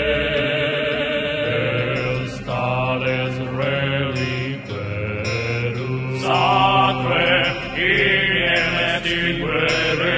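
Neomedieval pagan music: a low male voice chanting in phrases over a sustained drone.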